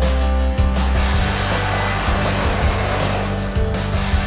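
Background music with steady low notes; a rushing noise swells up in the middle and fades.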